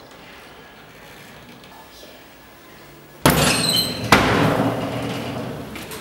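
A door being burst open: a sudden loud crash about three seconds in, with a ringing, glassy rattle. A second sharp bang follows just under a second later, and the noise then dies away slowly.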